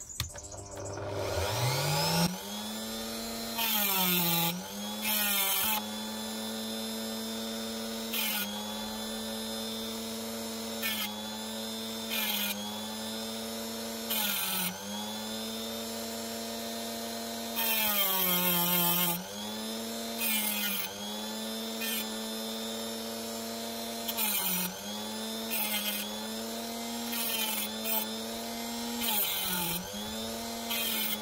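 Dremel rotary tool with a small cutting disc spinning up in a rising whine. It then runs at a steady pitch that sags each time a piece of opal rough is pressed into the disc, with short gritty cutting bursts.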